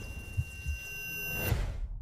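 Movie trailer sound design: a steady high ringing tone over a low rumble with two dull low hits, swelling and then cutting off abruptly to silence about a second and a half in.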